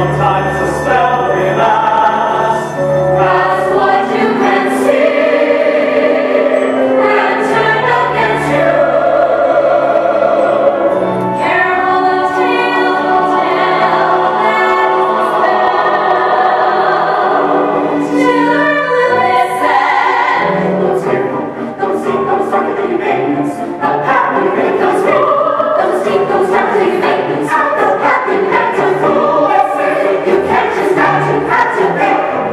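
A stage musical's ensemble singing in chorus over an instrumental accompaniment with sustained bass notes: curtain-call finale music.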